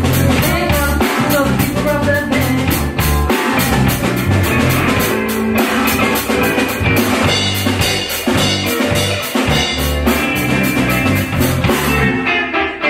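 Live rock band playing: drum kit keeping a steady beat under electric bass and electric guitars.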